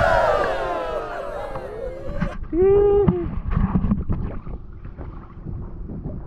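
Several people whooping and calling out together, their voices sliding up and down and fading within the first second or two, then one drawn-out call about two and a half seconds in. Underneath, water sloshing and splashing around people wading waist-deep, with wind rumbling on the microphone.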